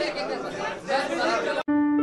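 Voices talking in a room, cut off abruptly near the end and replaced by the opening held notes of a news channel's outro jingle.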